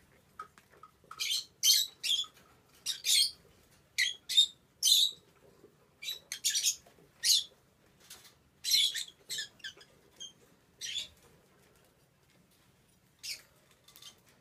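Young peach-faced lovebird giving short, scratchy, high-pitched chirps in an irregular series, with a gap of a second or two before one last chirp near the end.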